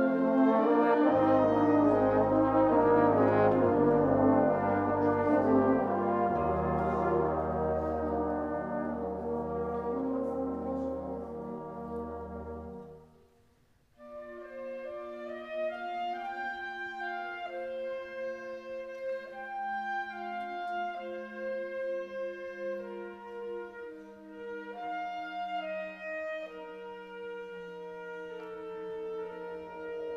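Amateur wind band playing a concert piece: a loud, full passage over long-held low bass notes dies away about halfway through, and after a brief pause a quieter passage of held melodic brass lines follows.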